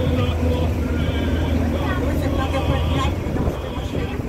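Steady low engine hum of a moving bus, with music carrying a singing voice with vibrato playing over it.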